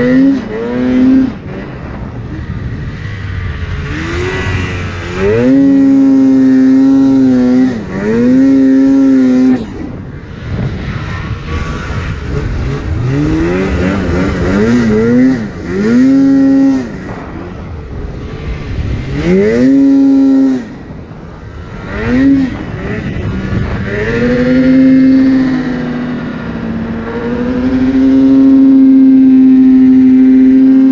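Polaris Axys RMK 800 snowmobile's two-stroke twin revving hard in repeated bursts through deep powder. About ten times the pitch sweeps up, holds high at full throttle and drops as the throttle comes off, with the longest pull near the end.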